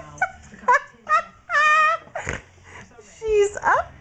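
High-pitched wordless voice sounds: a few short rising yelps in the first second, a long held squeal about a second and a half in, and another rising squeal near the end, with a short rustle just past two seconds.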